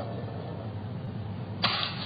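Steady low hum and hiss of room and playback noise, with no voice, ending in a short, sudden, louder burst near the end.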